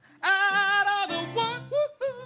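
Live gospel-style song: a singer holds long notes with vibrato over band accompaniment with a steady low bass line.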